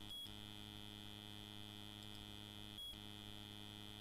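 Faint steady electrical hum with a thin high whine above it, dropping out briefly just after the start and again near three seconds in.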